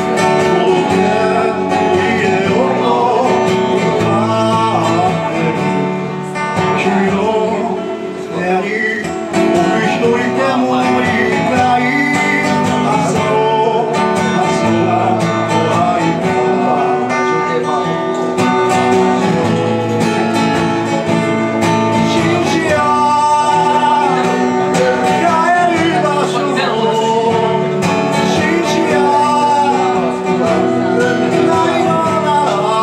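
Live acoustic-guitar song: a man singing over a strummed acoustic guitar.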